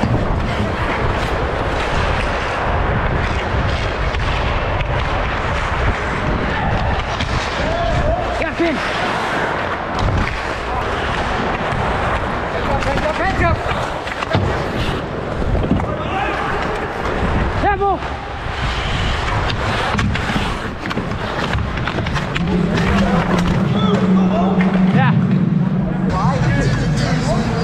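Ice hockey play heard from a player's body-mounted camera: skate blades scraping and carving the ice and sticks and puck clacking, as many short knocks over a steady rushing noise.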